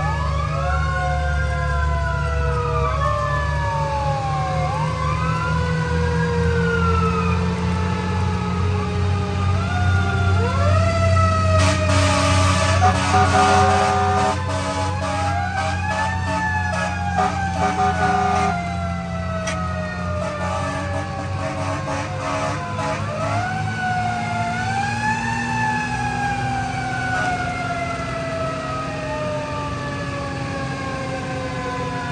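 Fire engine's Federal Q mechanical siren wound up again and again, each wail rising to a peak and then coasting slowly down in pitch so that the wails overlap, over the steady low rumble of the truck's engine. About twelve seconds in there is a short, louder stretch with extra steady tones and clatter.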